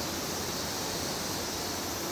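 Steady rushing, hiss-like background noise with no distinct events.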